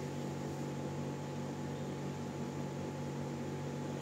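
Steady low hum over an even faint hiss, with no other event: room tone.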